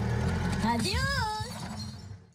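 A car engine's low, steady rumble, with a short high voice-like exclamation about a second in; the sound fades near the end.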